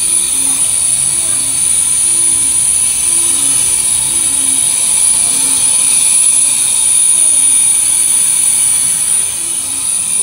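Steady loud rushing air noise with a high-pitched whine, typical of a running fan or blower, with a faint murmur of voices behind it.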